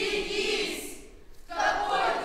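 A chorus of voices crying out together, one long drawn-out wail that fades, then a second starting near the end.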